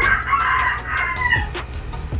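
A single long animal call lasting about a second and a half, falling in pitch at its end.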